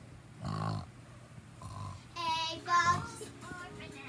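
A child vocalizing without words: a short low-pitched sound about half a second in, then two short sung notes a little past the middle.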